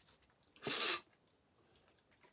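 A single short, sharp breath noise from a man, a bit under a second in.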